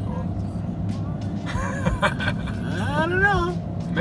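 A steady low engine and road hum heard inside a moving car's cabin. A voice sounds briefly about halfway through, then glides up and down in pitch near three seconds in.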